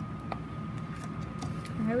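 Faint handling of a small plastic toy robot, with one light click about a third of a second in, over a faint steady high-pitched whine. A voice begins right at the end.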